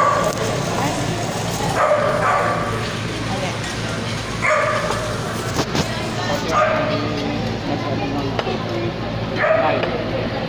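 Background chatter over a steady low hum, with a short high-pitched call repeated four times, two to three seconds apart.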